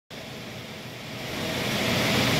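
Steady mechanical hum and noise, swelling in level through the two seconds.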